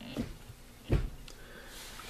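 Two knocks as a manual gear lever fitted with an HPA short throw shifter is moved through its throw: a light one just after the start and a louder, deeper one about a second in.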